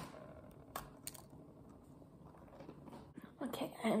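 A person biting into a cookie and chewing it, with two sharp crunches about a second in.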